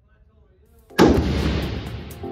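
A single rifle shot from a tan FN SCAR-pattern rifle, about a second in, followed by a long echo off the indoor range.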